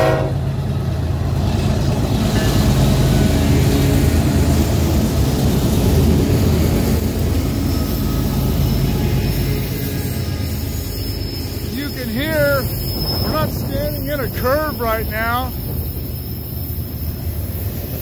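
Union Pacific freight train passing close by: the diesel locomotives' engines running loudly in the first half, then the steady rumble and clatter of double-stack container cars rolling over the rails.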